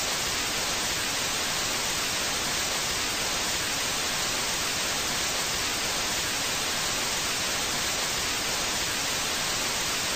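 Steady hiss of analog TV static, a bright, even noise that does not change and carries no tone or voice.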